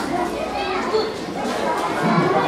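Many children's voices chattering and calling out at once.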